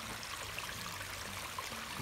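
Water running steadily through a newly built pondless garden stream, trickling over and between ragstone rocks just after the stream was switched on.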